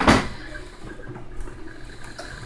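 Steady low whir and hiss of the 3D printer enclosure's 4-inch exhaust fan and printers running, with a faint steady high tone. A short rush of noise at the very start.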